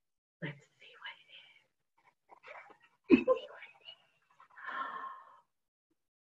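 Soft, broken speech and whispering, with a short louder voice sound about three seconds in.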